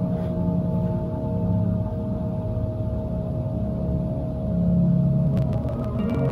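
Slow ambient meditation music: a low, swelling gong-like drone under a steady held tone, with a run of bright chime-like strikes coming in near the end.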